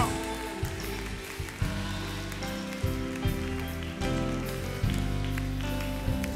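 Live church worship band playing a slow instrumental passage without singing: sustained chords over a bass line, the chords changing every second or so.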